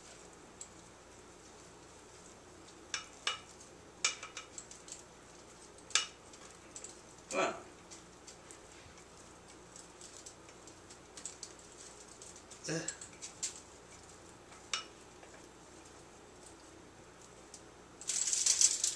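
A silicone spatula scraping and knocking against a mixing bowl as sticky, risen bread dough is worked out of it onto a foil-lined baking sheet: scattered short clicks and light knocks.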